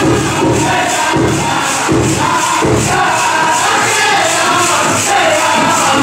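Powwow drum group singing over a steady big-drum beat for a women's jingle dress dance, with the metal cones on the dancers' dresses jingling in time.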